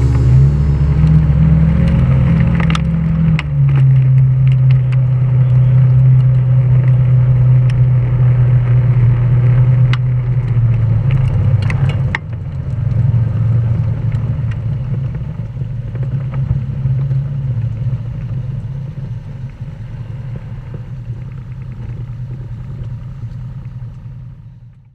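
Side-by-side UTV engine running at low speed as the machine rolls across gravel, with stones crunching and ticking under the tyres. The engine note steps down about three seconds in and grows fainter over the second half.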